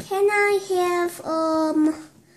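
A girl singing three long held notes in a high voice, the pitch dipping slightly from the first note to the later ones.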